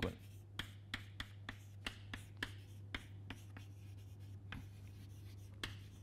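Chalk writing on a chalkboard: a run of irregular sharp taps and short scrapes, about two a second, as the letters are written, over a steady low hum.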